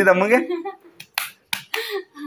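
A man snapping his fingers: four short, sharp snaps in quick succession, starting about a second in.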